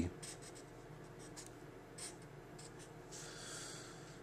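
Faint sound of a Sharpie felt-tip marker writing on paper: several short strokes, then a longer one a little past three seconds in.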